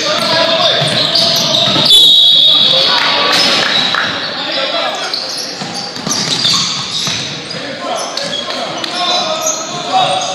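Basketball being dribbled on a hardwood gym floor during a game, with running players and indistinct voices from players and spectators, echoing in a large hall.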